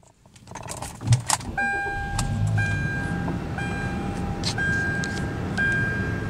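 2011 Kia Optima being started: a few clicks and the engine starting about a second in, then the engine idling while a dashboard warning chime repeats about once a second.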